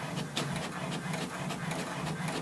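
HP DeskJet 2752e inkjet printer printing the welcome page: the print-head carriage and paper feed are running, a steady hum under a quick, even run of clicks.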